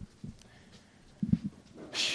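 Faint soft thumps and shuffling, with a short cluster of low knocks a little over a second in.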